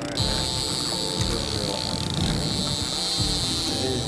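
Fishing reel drag buzzing steadily as a hooked blue shark runs and pulls line off the reel. The buzz starts suddenly and fades out near the end.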